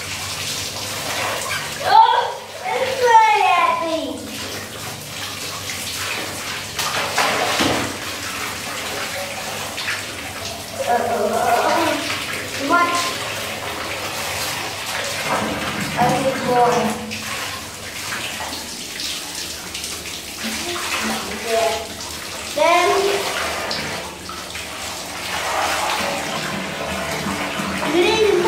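Water from a wall tap running steadily, splashing onto a plastic toy held under the stream in a tiled shower room. Children's voices break in over it several times.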